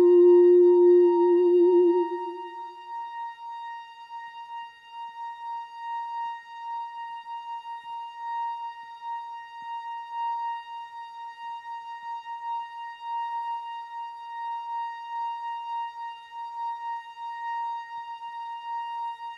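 Music: a low hummed note with vibrato fades out over the first three seconds, leaving a single steady high ringing tone, slightly pulsing, that holds on unchanged.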